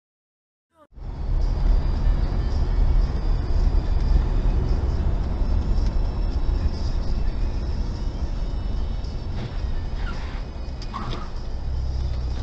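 Steady low rumble of a car's engine and road noise heard from inside the cabin on a dashcam recording, starting abruptly about a second in after silence.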